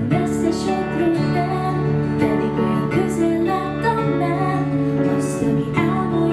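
Acoustic pop band playing, with acoustic guitar chords and a woman singing over them.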